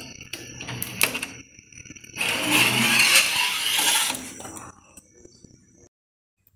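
Latches on a stainless-steel oven door clicking and knocking as they are turned, then the metal door being opened with a rush of scraping noise that lasts about two seconds and fades.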